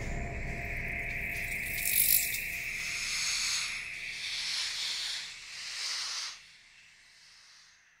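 Ambient experimental electronic music: hissing noise textures and a steady high tone over a low rumble. The sound drops away sharply a little past six seconds, leaving only a faint trace.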